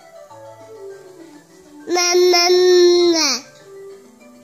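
Baby's loud, sustained "mmmm" hum about two seconds in, held at one pitch for about a second and a half, then sliding down as it fades, over faint background music.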